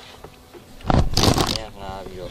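A shopping bag rustling loudly as it is handled, a burst lasting under a second about halfway through, followed by a brief voice.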